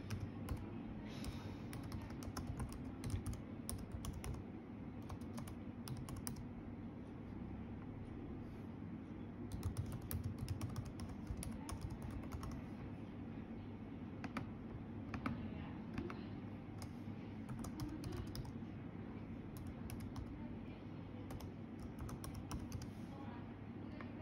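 Computer keyboard being typed on in scattered short runs of keystrokes with pauses between, while a password is entered.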